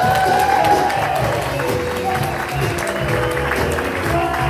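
A live band of drums, guitar and keyboard playing on, with audience applause over it as a sung number ends.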